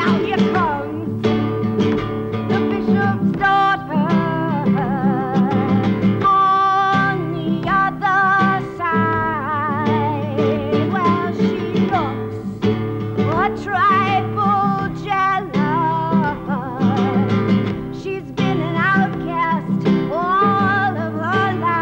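A woman singing with a wide, wavering vibrato over a strummed guitar.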